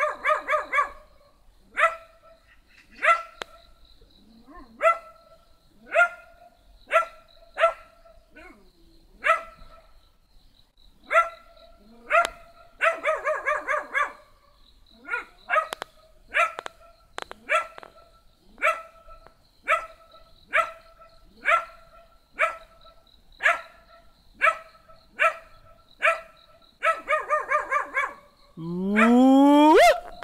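A small dog barking over and over, roughly once a second, with quick runs of rapid barks near the start, in the middle and near the end. Just before the end a long call rises steeply in pitch.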